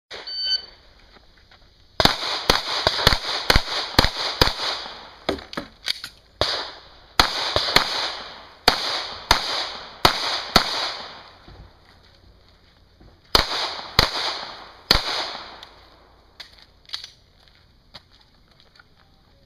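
A shot timer's start beep, then a Smith & Wesson M&P 9mm pistol fired in strings: six quick shots about two seconds in, then further strings of shots with short pauses between, each shot ringing off briefly.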